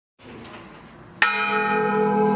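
A hanging church bell struck once by its clapper, pulled by a hand-held rope, about a second in. The strike rings on with a steady, many-toned hum.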